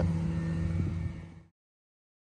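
Tow truck's engine idling steadily, cutting off suddenly about a second and a half in.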